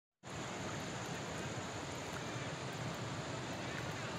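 Steady rushing outdoor background noise, with a few faint high chirps near the end.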